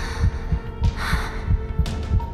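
A fast heartbeat sound effect of repeated low thuds over a tense, sustained music drone, with a sharp hit near the end.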